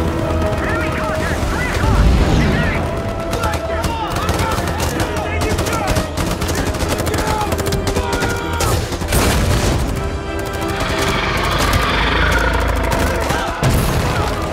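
Film battle soundtrack: rapid automatic rifle fire from several soldiers' guns, over a dramatic orchestral score and a heavy low rumble.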